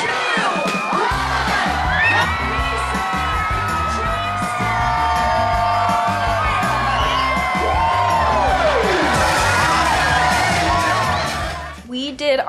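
Loud music with a steady beat, with a crowd cheering and whooping over it.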